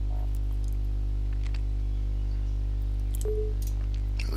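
Steady low electrical hum with a few faint mouse clicks.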